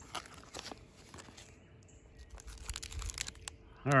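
Faint, scattered crinkling and clicking of a foil and plastic food wrapper being handled, busiest about two-thirds of the way in.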